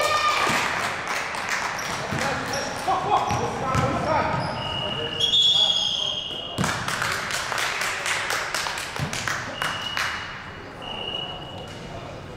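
Live basketball play on an indoor hardwood court: the ball bouncing and players' shouting voices. A high steady tone sounds for about two seconds midway through, and briefly twice more near the end.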